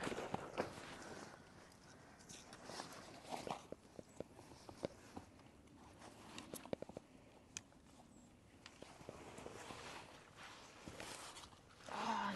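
Faint rustling of a landing net's mesh and an unhooking mat being handled, with scattered light clicks and steps on gravel.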